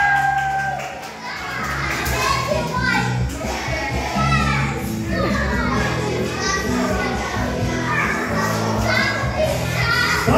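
Many children's voices chattering and calling over background music with a steady, repeating bass line.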